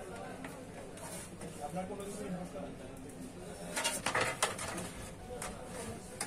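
Cables and connectors being handled and fitted inside a desktop PC case: rustling, with a quick cluster of sharp clicks about four seconds in. A faint voice murmurs in the background.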